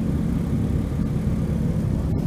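Motorcycle engines idling in a group, a steady low rumble.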